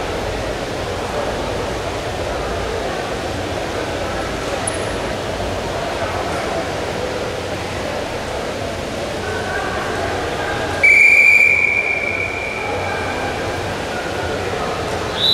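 Arena crowd noise with scattered shouts, then about 11 s in a loud, steady high-pitched signal tone sounds for about a second and fades to a lower level: the signal marking the end of the wrestling period as the clock reaches 3:00.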